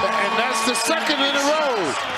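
A man's voice on the game's broadcast commentary, with no clear words, over the arena's background sound.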